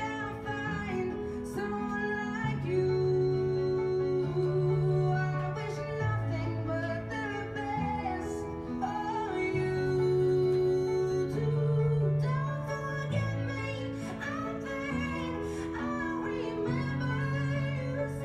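A recorded ballad played back over the room's speakers: a woman sings slow, held phrases over a sustained instrumental accompaniment.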